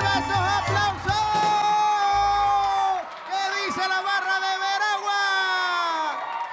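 Live accordion-led folk band music coming to its end: the bass beat stops about a second in, leaving long held notes that slowly fall in pitch, with whoops and cheering from the audience.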